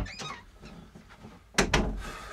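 A door opening, with two sharp knocks close together about a second and a half in.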